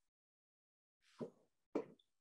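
Near silence on a video-call microphone, broken in the second half by two faint, short mouth sounds from the speaker just before he talks again.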